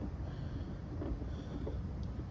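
Quiet, steady low rumble of outdoor background noise, with no distinct clicks or knocks.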